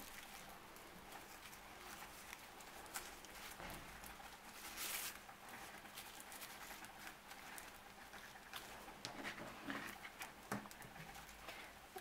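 Faint rustling and small ticks of paper yarn handled by the fingers as its loose ends are knotted together, with a brief louder rustle about five seconds in.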